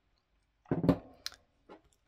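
A few short knocks and clicks, the loudest about two-thirds of a second in: a cut-glass candle holder being picked up off a table and handled.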